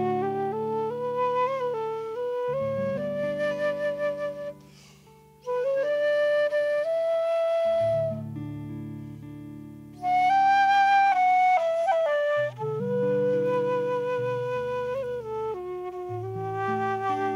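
Transverse flute playing a slow Irish air in long held notes over sustained low chords. There is a short break about five seconds in, and the loudest, highest notes come about ten seconds in.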